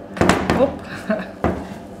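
About four sharp knocks and clatters of a small plastic-and-metal spectroelectrochemistry cell being handled on a bench top, the loudest near the start, with a short laugh at the end; the rapping goes with the cell being shown off as very solid.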